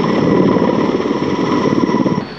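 Mil Mi-26 heavy transport helicopter in flight: a fast, even rotor beat under a steady high turbine whine.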